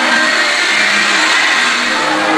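Dance music under a loud, dense din of crowd noise from a dancing, cheering crowd, heard as a steady rushing wash with little bass.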